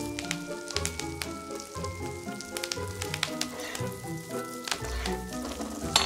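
Beef steak frying in a pan with oil and melting butter: steady sizzling with fine crackles. Background music with held notes plays over it.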